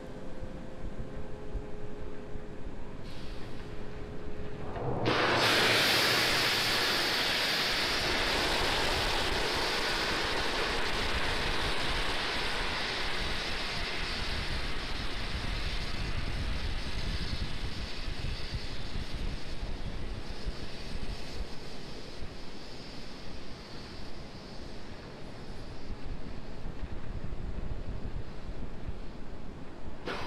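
Steady, loud hiss of the fuelled Falcon 9 rocket venting on the launch pad, starting suddenly about five seconds in, after a faint hum.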